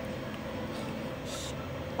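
Steady low room hum, with one brief soft hiss about a second and a half in.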